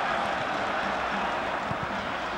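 Steady stadium crowd noise, an even din with no single cheer or chant standing out.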